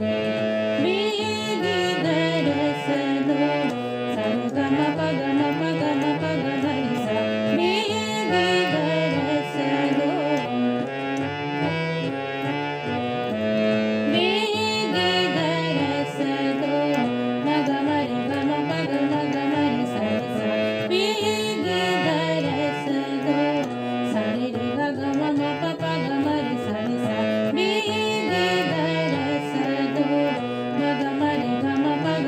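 Harmonium playing fast taan runs in Raag Bilawal, with a voice singing the same phrases and a tabla keeping the 16-beat teentaal cycle at medium tempo.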